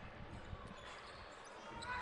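Faint basketball court sound: a basketball bouncing on a hardwood floor, heard as a few faint ticks over the low hum of a large hall.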